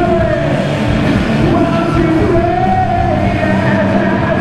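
A live rock band playing: electric guitar and drums under a singer holding long, slightly bending notes.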